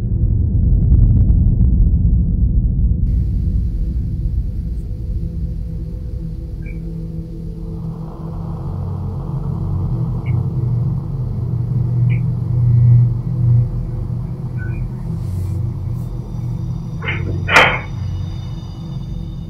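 Low, dark rumbling drone of an eerie background music bed. A sudden sharp sound stands out near the end.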